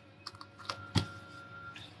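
A few light clicks and taps, the loudest about a second in, from tarot cards being handled and laid down on a table.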